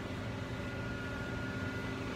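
Laser engraver running while it cuts out the wooden pieces: a steady mechanical hum and hiss from its fans, with a faint steady high tone.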